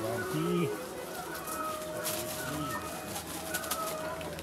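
A dove cooing: low, rounded coos about half a second in and again about two and a half seconds in, over faint background voices and a few light clicks.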